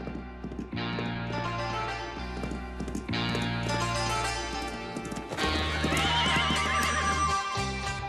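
A horse's hooves clip-clop on a dirt path under background music of long sustained chords. A horse whinnies near the end.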